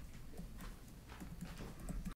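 Footsteps of a man walking across a carpeted meeting room: faint, irregular soft taps over a low room hum.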